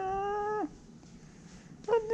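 A tabby cat meowing: one drawn-out meow that rises and then holds its pitch, and a second meow starting near the end.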